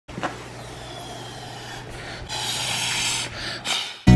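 Air blown through a drinking straw into fluffy slime: a breathy hiss, faint at first and louder from about two seconds in, with a shorter puff near the end.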